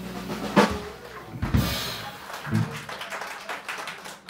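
A live blues band's last held guitar chord fades, then the drum kit ends the song with a few separate loud hits on bass drum and cymbal, about half a second, a second and a half and two and a half seconds in. Scattered clapping starts near the end.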